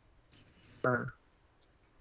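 A single sharp click about a third of a second in, followed near the middle by one short spoken syllable from a voice.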